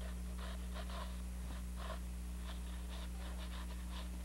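Short, soft scratching strokes of a drawing stick sketching on canvas, about two or three a second, over a steady electrical hum.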